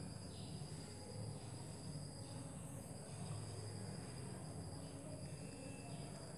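Steady high-pitched chirring of crickets, dropping out for moments now and then, over a faint low hum.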